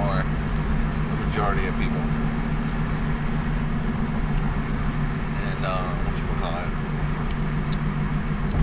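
Steady low road and engine rumble inside a moving car's cabin, with a few short vocal sounds breaking in.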